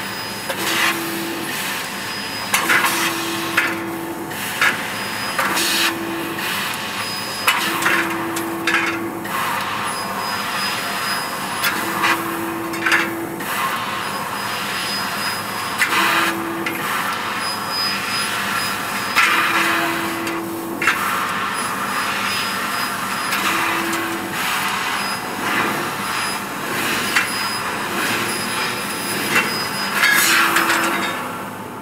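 1000 W fiber laser tube cutter working on 1 mm stainless steel square tube: a steady hiss with short humming tones that come and go every couple of seconds and sharp knocks scattered throughout.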